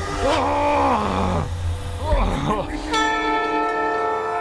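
A man's drawn-out pained groan, rising and falling in pitch, then a second shorter cry a couple of seconds in, over a low rumble. Near the end a steady held musical note comes in.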